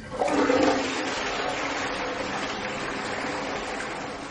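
Water gushing on suddenly, loudest in its first moments, then settling into a steady rush of running water.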